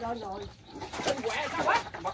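Voices calling out and talking, quieter than the nearby speech, with a short rising call near the end.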